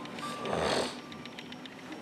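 A single noisy breath of about half a second from a man with a congested nose and sinuses.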